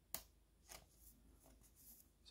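Near silence with faint rustling of a thin plastic card sleeve and a trading card being handled as the card is slid into the sleeve. There is a soft tick just after the start and another, fainter one under a second in.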